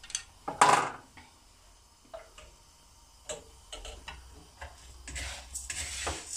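Light kitchen handling noises: one louder clatter about half a second in, then scattered soft ticks. Near the end comes a rustling as rice toasting in a dry pan is stirred.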